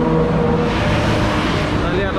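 Steady road traffic from a busy multi-lane highway below, the noise swelling briefly about halfway through as a vehicle passes.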